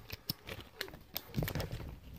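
Handling noise close to the microphone: irregular small clicks and taps as the phone and a foil Lego minifigure blind bag are picked up and moved, with a low bump about one and a half seconds in.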